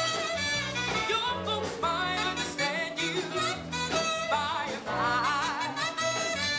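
Live soul band playing an instrumental passage: a saxophone lead with vibrato over a steady bass line and drums.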